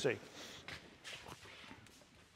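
Soft footsteps on a workshop floor, a few paces, fading to quiet room tone in the second half.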